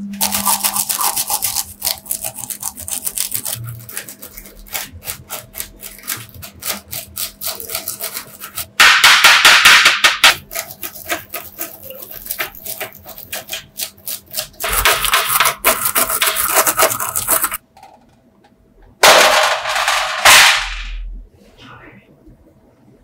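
Hand wire brush scrubbing rust and caked dirt off a small rusty metal part: a rapid scratching of many short strokes, with three louder stretches of fast, continuous scrubbing.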